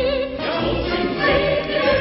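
Operetta music: a high solo voice holds a note with wide vibrato, and about half a second in a chorus with orchestra comes in and carries on.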